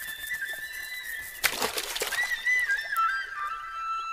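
Film background score: a flute holding a long note, then a wandering melody that settles on a lower held note, with a brief rushing noise about one and a half seconds in.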